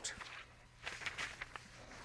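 Faint rustling and soft scrapes of a paper stencil pattern being handled and slid over a quilt top, in a few short strokes.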